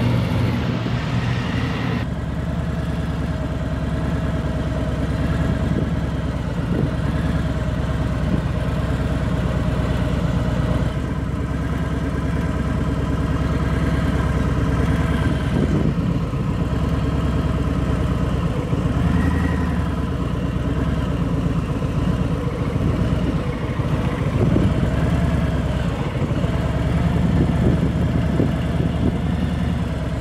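Harley-Davidson touring motorcycle's V-twin engine running at low revs through slow, tight turns, held nearly steady with only slight rises in pitch now and then.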